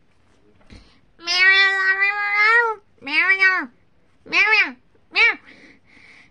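A voice making high, meow-like cries with no words: one long drawn-out call, then three shorter calls that rise and fall, each shorter than the last.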